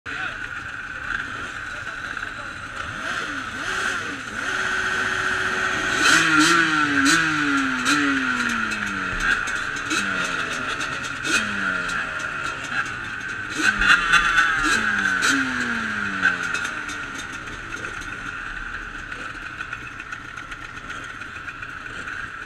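Several motorcycle engines revved in repeated short blips, each rev falling away in pitch, over a steady engine drone. Sharp cracks come in among the revs.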